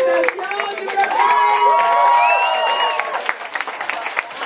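A small crowd cheering and whooping, several voices holding long calls at once, over scattered hand clapping.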